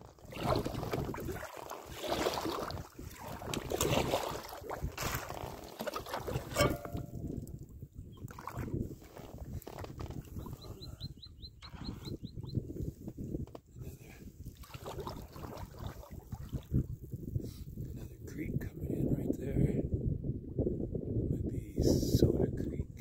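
A packraft drifting and being paddled down a creek: water sloshing and splashing against the boat, with low wind rumble on the microphone swelling and easing every second or two.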